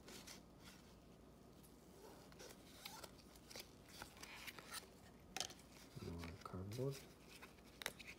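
Faint rustling and light clicks of cardboard trading cards being slid apart and sorted by hand, busiest in the middle. A short hesitant "uh" comes near the end.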